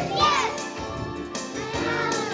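Children's choir singing with a backing track, many young voices together, with a brief high voice sliding up and back down just after the start.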